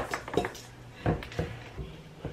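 Hands mixing and squeezing cookie dough in a stainless steel mixing bowl, with a series of irregular knocks and clicks against the metal bowl.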